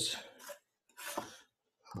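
Mechanical pencil lead scratching a short mark on drafting paper, once, about a second in.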